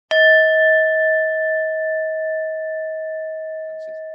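A bell-like chime struck once just after the start, then ringing on in one steady mid-pitched tone that slowly fades, its higher overtones dying away within a couple of seconds.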